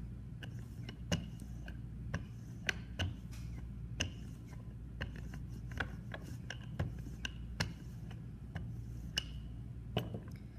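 Wooden handled rolling pin rolled back and forth over a clay slab, its ends riding on wooden thickness guides, giving irregular clicks and knocks about one or two a second over a low steady hum.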